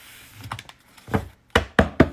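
A few light knocks and taps, one about a second in and three close together near the end, as a deck of tarot cards is handled on a desk.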